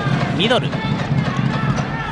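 Basketball arena sound during live play: steady crowd noise and players running on the court, under a commentator's short call of "reba—" (rebound) about half a second in.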